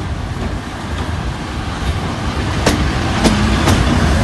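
Electric passenger locomotive hauling double-deck coaches rolling past at the platform, a steady rumble growing louder as it comes alongside, with a few sharp clicks in the second half.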